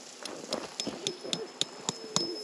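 Scattered light clicks and taps, about eight in two seconds, over faint murmuring in the background, with a thin steady high tone coming in about halfway.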